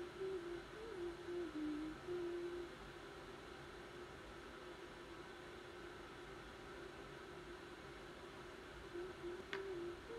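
A woman humming softly to herself, a wavering tune that runs for the first few seconds, stops, and comes back briefly near the end. A faint click just before the end.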